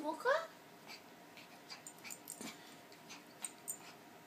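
Pembroke Welsh Corgi puppy yipping twice at its reflection right at the start, two short rising yaps. Light scattered clicks and taps follow as it moves about.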